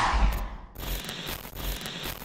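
A rushing noise that swells and fades, then a dense crackling, scratchy noise with low thumps underneath. It cuts off suddenly.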